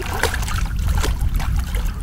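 Water splashing and dripping as a mirror carp is lifted out of shallow lake water by hand, in irregular splashes, over a steady low rumble.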